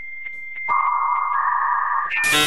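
Electronic sound effect of steady synthetic tones: a thin high beep, then a lower, louder tone that comes in under it about two-thirds of a second in and carries on as the beep stops, with a few faint ticks.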